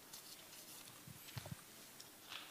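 Near silence with a few faint, soft taps and rustles a little past a second in: Bible pages being handled and turned at a pulpit.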